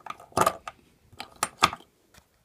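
Small metal injector parts and red coils with steel brackets clicking and clinking against a hard worktop as they are picked up and set down, in about five sharp, separate knocks.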